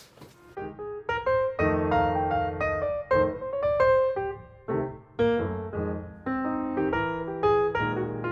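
Background piano music, a melody of struck notes over chords, starting about half a second in.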